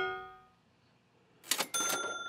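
Cash-register 'ka-ching' sound effect. The ringing of its bell fades out in the first half second. After a short silence comes a brief swish and a bright bell ding about three quarters of the way in, still ringing at the end.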